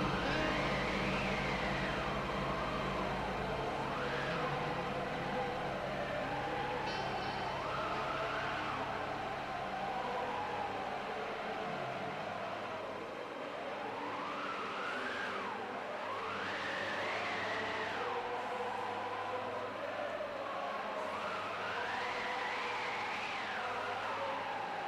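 A siren wailing, its pitch rising and falling in slow, uneven sweeps several times.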